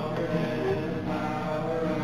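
Live worship song: several voices singing together over a strummed acoustic guitar, amplified through a PA.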